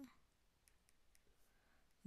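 Near silence, with a few faint clicks of a stylus tapping a tablet's glass screen while handwriting.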